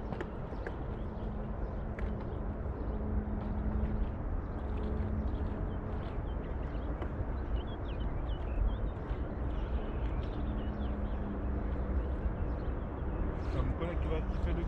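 Wind rumbling on the microphone over water lapping against an inflatable boat's hull, with a steady low hum running underneath.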